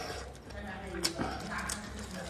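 A kitchen knife cutting through soft cooked offal: a couple of sharp clicks and soft squishing. A faint, voice-like pitched sound runs underneath.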